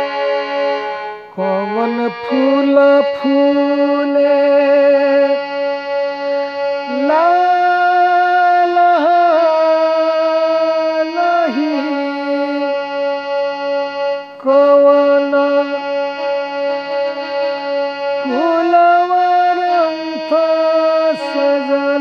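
Electronic keyboard playing a slow folk-devotional melody in long held notes, some wavering and sliding into the next pitch.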